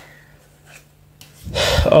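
Mostly quiet with a faint steady low hum. Near the end, a man takes a loud breath in and starts to speak.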